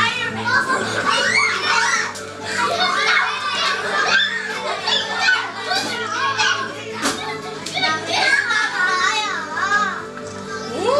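A group of young children chattering and calling out over one another, with music playing underneath.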